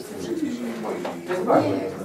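Indistinct low voices murmuring in a small room, loudest about one and a half seconds in.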